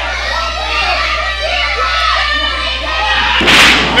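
Live crowd voices shouting and calling out, then about three and a half seconds in, a short, loud crash as a wrestler is powerbombed onto the ring mat.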